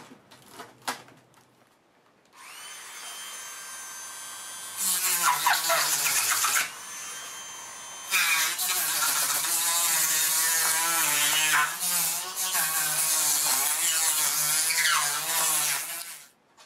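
Dremel rotary tool with a cutting disc starts up with a steady high whine about two seconds in, then cuts into foam. While cutting it runs louder and harsher with a wavering pitch, eases back briefly in the middle, then cuts again until the end.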